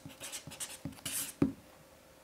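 Pen writing on paper: a quick run of short scratchy strokes, ending with a sharp tap about a second and a half in.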